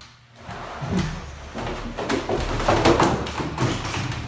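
A plastic laundry basket with a rider aboard bumping and clattering down a flight of stairs, a rapid run of knocks starting about half a second in. It grows loudest near the end as the basket and rider crash onto the landing.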